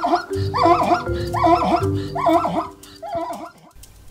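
Zebra braying: a run of about six short calls, about two a second, fading near the end, over soft background music.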